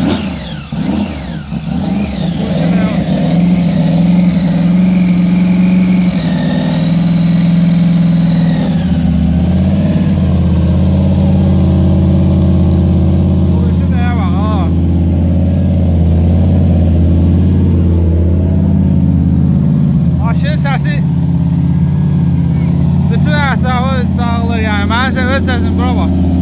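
Supercharged V8 of a Pro Street Chevrolet Malibu idling loud and steady through its side-exit exhaust just after being started, the idle settling to a lower pitch about nine seconds in.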